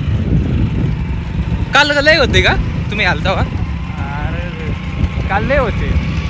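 Steady low rumble of a motor vehicle running along a rough dirt track. A voice comes over it in short bursts about two, three, four and five and a half seconds in.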